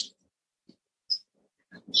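A pause in a man's speech: a short hiss as his last word ends, a brief faint high hiss about a second in, and otherwise near quiet until his voice resumes near the end.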